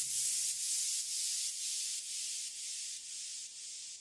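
Outro of an electronic dance track: a high hissing white-noise sound with no beat or bass, pulsing about twice a second and fading out.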